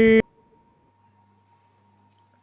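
A held note from a hip-hop dubplate being played back cuts off abruptly a moment in. Near silence follows, with only a faint steady high tone and a low hum.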